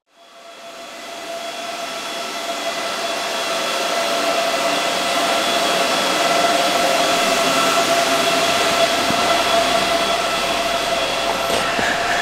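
Many cooling fans of crypto-mining rigs running together: a steady loud whirring with a high, even whine. It swells up over the first few seconds, then holds level.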